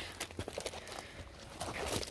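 Faint rustling and a few light ticks as a large diamond painting canvas is turned over by hand on a tabletop.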